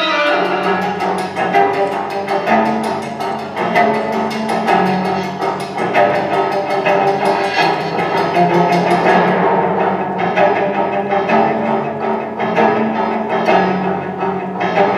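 Orchestral horror film score played over a hall's speakers: low bowed strings holding long notes under a fast, steady ticking of percussion. The bright top of the ticking drops away about nine seconds in.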